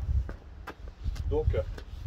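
A few light clicks and taps from handling a long metal load bar and its foam sleeve, over an uneven low rumble.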